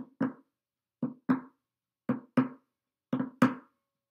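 Acoustic guitar played percussively with short muted hits: four pairs of quick hits, about one pair a second, each dying away at once. These close out the song.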